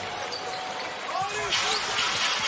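A basketball dribbled on a hardwood arena court amid steady crowd noise, with short squeaks from players' sneakers. The crowd grows louder about one and a half seconds in.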